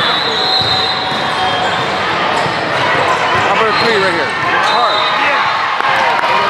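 Volleyball tournament hall ambience: a crowd of voices echoing in a large gym, with volleyballs being struck and sneakers squeaking on the hardwood courts.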